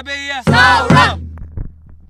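A song ending: a singing voice holds a last wavering line over a steady low bass, stops about a second in, and the music then fades away.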